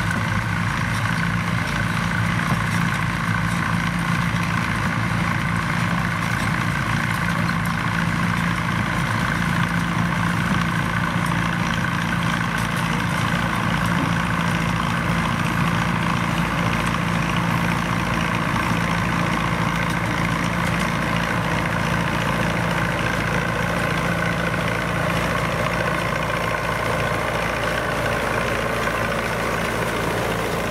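Vintage Fiat Som 50 tractor engine running steadily under load while pulling a Stoll sugar-beet harvester, with the harvester's lifting and elevator machinery running along with it. The sound stays even throughout, with no change in engine speed.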